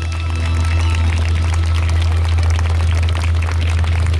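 Dance music played over loudspeakers, with a heavy steady bass, and quick taps of dancers' feet on a wooden dance board.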